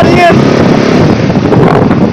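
Motorcycle engine running while under way, buried in heavy wind noise on the microphone.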